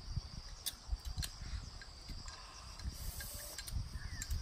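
Insects chirring steadily in the background, a constant high drone, with faint low rumbles and a few small clicks.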